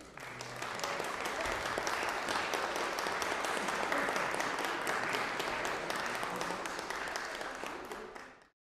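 Congregation applauding the choir: steady clapping that fades away near the end.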